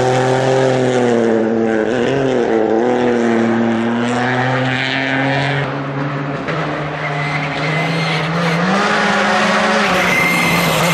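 Rally car engines on a gravel stage. One car's engine holds a steady note that wavers about two seconds in and fades as the car drives away. A second rally car's engine then grows louder, its pitch rising as it approaches near the end.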